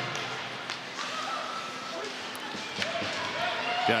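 Rink sound of a live ice hockey game: a few sharp clicks of sticks and puck on the ice over a steady arena hum, with faint voices of players or crowd calling out.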